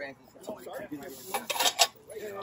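China being handled, with three sharp clinks close together near the end, the last the loudest.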